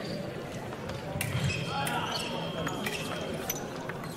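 Fencers' footwork on the piste: scattered sharp shoe taps and stamps, heard over voices and the rumble of a large hall.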